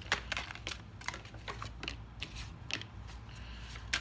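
A deck of cards being shuffled by hand: a run of quick, irregular clicks and flicks of card edges, over a faint steady low hum.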